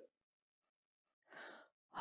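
Near silence, with one faint breath drawn in about one and a half seconds in, a singer's intake of breath before the hymn.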